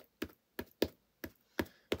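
A black ink pad tapped repeatedly onto a clear stamp to ink it: about seven short, light taps at an uneven pace.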